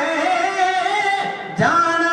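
Male kavishri singers performing a Punjabi devotional ballad in long held notes, with no instruments. A new phrase comes in with an upward swoop about one and a half seconds in.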